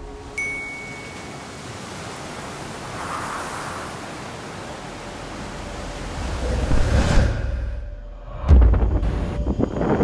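Steady rushing wash of sea and wind, with a brief high ping near the start; the rush swells about seven seconds in and is cut by a deep low boom about eight and a half seconds in.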